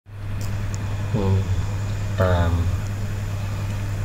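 A voice speaking two short phrases over a steady low hum.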